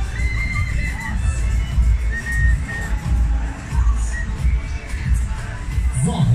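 Loud fairground ride music with a heavy bass beat, with crowd shouts mixed in.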